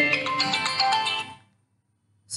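Mobile phone ringing with a musical ringtone that plays a melody, cutting off abruptly about one and a half seconds in as the call is answered.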